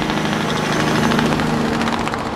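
Steady motor or engine running at a constant speed, a hum with one held low tone over a wash of noise.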